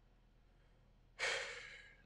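A man's single breathy exhale, a sigh, about a second in, starting sharply and fading away over most of a second.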